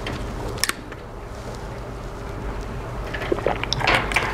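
Clicks and rustling of a small handheld object being handled close to a clip-on microphone: a quick pair of clicks about half a second in, then a faster run of clicks near the end, over a steady low hum.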